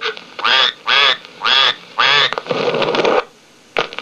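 Recorded duck quacking from a See 'n Say talking toy, played back: four short quacks about half a second apart, then one longer quack.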